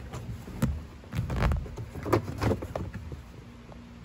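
A car's under-dash cover panel being handled and pushed up against the dashboard trim: a series of light knocks and scrapes, with the heaviest bumps about one to one and a half seconds in.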